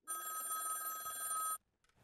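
An old-style telephone bell ringing once for about a second and a half, then stopping suddenly: an incoming call.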